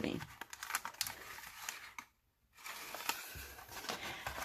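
Textured plastic vacuum-sealer bag crinkling and rustling as it is handled, with scattered small clicks; the sound cuts out completely for about half a second near the middle.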